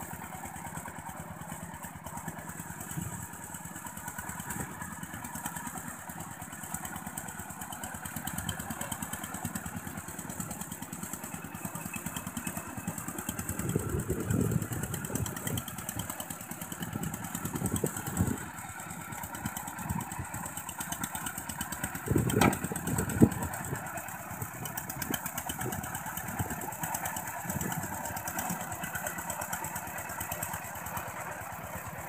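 A two-wheel walking tractor's single-cylinder diesel engine runs steadily with a fast chugging beat while its cage wheels till a muddy paddy field. The engine grows louder for a few seconds about halfway through and again about two-thirds of the way in, and a single sharp knock comes during the second loud stretch.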